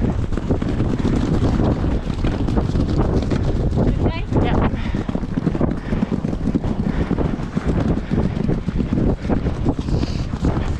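Wind buffeting the microphone of a helmet camera on a galloping horse, with the thud of its hooves on turf.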